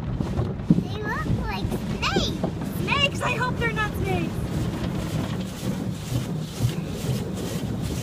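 Automatic car wash heard from inside the car: a steady rush of water and brushes washing over the body. Over it, in the first half, a young child makes high squealing, sliding vocal sounds.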